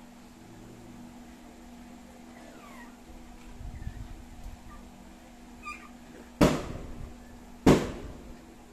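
Dogs play-fighting: faint whines, then two loud, short, sharp yips about six and a half and seven and a half seconds in.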